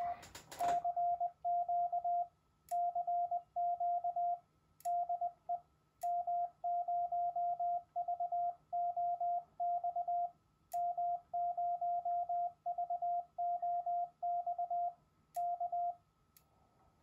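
Morse code (CW) sidetone from an Icom IC-705 transceiver's monitor: a steady tone of about 700 Hz keyed on and off in dots and dashes by the radio's internal keyer, sent remotely from FLDigi over Wi-Fi. It is the sign that remote CW keying is working.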